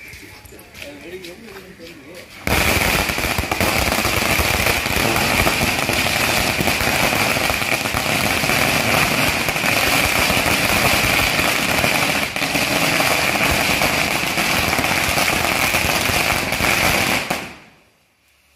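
A 2,000-cracker firecracker string (a '2K wala' ladi) going off as one unbroken, rapid crackle of bangs. It starts suddenly a couple of seconds in, runs for about fifteen seconds, and dies away near the end.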